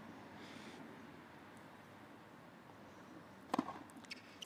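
Faint outdoor background, then near the end the sharp crack of a tennis racket striking the ball on a hard, fast first serve.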